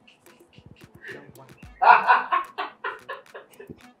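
Chicken clucking, a comic sound effect: a run of short clucks starting about two seconds in, loudest at first and fading over about two seconds.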